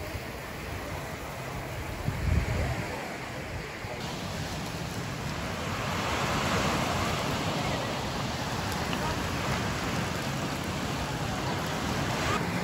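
Small waves breaking on a sandy beach, with wind on the microphone. This follows about four seconds of open-air promenade ambience with faint voices and a loud low rumble about two seconds in.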